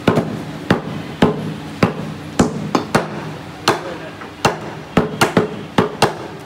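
Butchers' cleavers chopping beef on round wooden chopping blocks: a stream of sharp, uneven chops, about two a second, from two choppers working at once, over a steady low hum.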